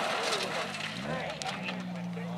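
Spectators' voices and exclamations over a rally car's engine as it slides off the track. The engine note rises about a second in and then holds steady at constant revs.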